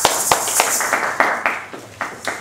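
Audience applauding, dying away about a second and a half in.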